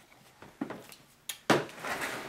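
A few light knocks and handling sounds as small clay toy bricks and the model house are touched, the loudest knock about one and a half seconds in.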